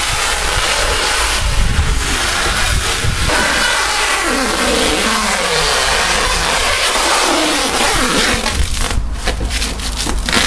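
Clear plastic stretch film being pulled off a roll and stretched over a car's bodywork: a loud, steady rasp that breaks off briefly a few times near the end.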